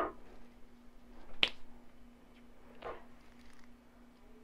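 A sharp click about one and a half seconds in and a softer one near three seconds, over a faint steady hum.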